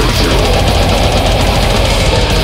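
Loud, dense brutal death metal music: heavily distorted guitars over rapid drumming, steady throughout.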